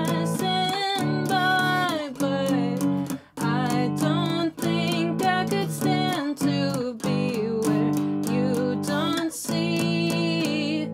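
A woman singing to her own strummed acoustic guitar: steady strokes of power chords (G, A, D, F#) on a small Taylor acoustic, with a short gap in the strumming about three seconds in.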